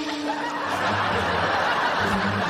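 Studio audience laughing, a dense spread of many voices.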